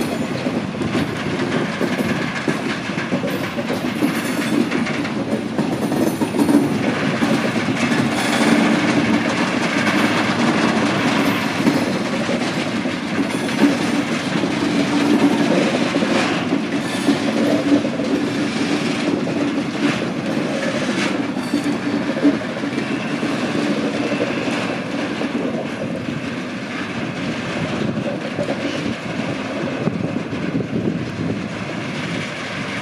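A Soviet M62 diesel locomotive's two-stroke V12 engine drones steadily as it slowly moves a train of tank wagons. The wagon wheels click irregularly over the rail joints and squeal now and then. The sound eases off a little near the end as the train draws away.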